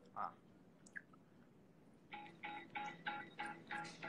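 A country-style song starts playing through a phone's small speaker about halfway through: a run of short repeated notes, about three a second, after a near-silent first half.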